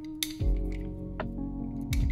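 Background music with held notes, a deeper bass coming in about half a second in, and a few light clicks.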